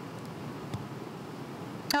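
Steady room tone: an even background hiss in the meeting room, with one faint tick a little under a second in. A woman begins speaking at the very end.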